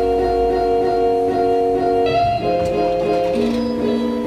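Background music led by guitar, with held chords that change about twice.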